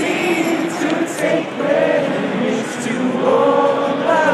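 Many voices of a crowd singing a song together, with unamplified acoustic guitars strummed beneath them.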